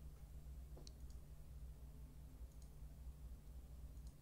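A few faint clicks from a computer mouse and keyboard as an entry is typed into a spreadsheet, over a low steady hum, near silence.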